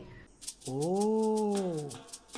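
A single drawn-out 'ooh' cry, about a second long, that rises a little in pitch and then falls, over a fast, even high ticking.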